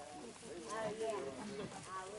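Indistinct low-level talk from people in a small group, no words clear.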